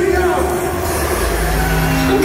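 Loud electronic dance music on a club sound system at the start of a DJ set: the pulsing bass beat drops out, and about a second in a long, steady bass note comes in under a voice-like line that glides up and down.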